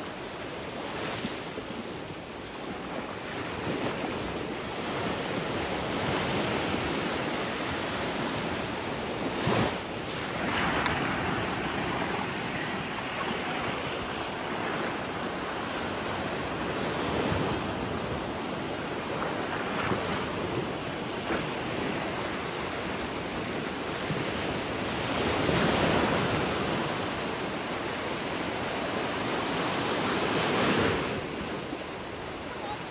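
Small waves breaking and washing up a sandy shore in shallow sea: a steady rush of surf that swells louder now and then as each wave breaks.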